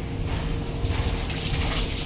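Water splashing and pouring as a mug of water is tipped over the body and then scooped again from a plastic bucket, with a hissing splash that grows stronger about halfway through, over a steady low rumble.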